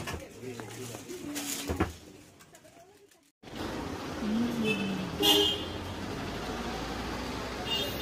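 Murmuring voices and shop bustle, then after a sudden cut, street noise in which a vehicle horn toots briefly about five seconds in and again near the end.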